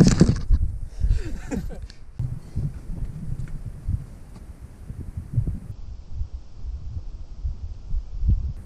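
Wind buffeting a camera microphone on an exposed mountaintop: an irregular low rumble, with a loud knock from the camera being handled right at the start.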